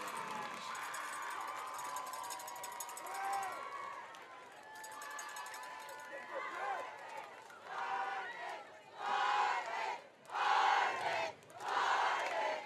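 Crowd noise from a stadium, then from about eight seconds in a high school cheerleading squad shouting a cheer in unison, in loud bursts about a second apart.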